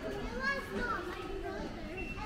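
Children's voices chattering and calling indistinctly.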